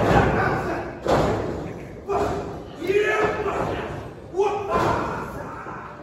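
Heavy thuds of wrestlers striking the ring, about four in six seconds, each followed by shouted voices, with echo from a large hall.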